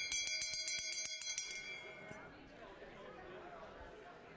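A microphone crackling with rapid clicks, about ten a second, over a steady high whine for about two seconds, then cutting off to a low murmur of voices in the room.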